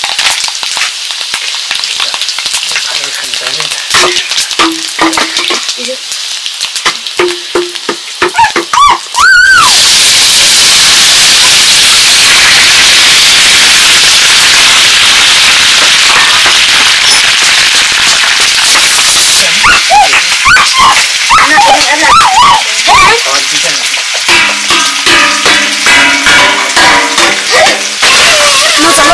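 Sliced vegetables frying in hot oil in a steel wok over a wood fire. A quieter sizzle runs first, then about nine seconds in a loud, even sizzle starts as the vegetables go into the oil and holds for about ten seconds. Voices come in near the end.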